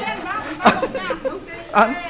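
Speech only: people talking in conversation.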